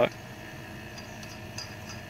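A few faint metallic clinks of lug nuts being spun onto wheel studs by hand, over a steady low background hiss.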